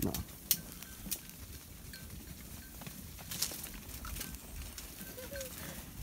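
A flock of sheep feeding among fallen carob pods: scattered light clicks and taps of hooves and pods on the dry, stony ground.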